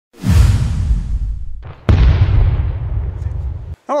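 Intro sound effects: a swelling whoosh that fades away over about a second and a half, then a sharp boom about two seconds in with a long, heavy low tail that cuts off abruptly.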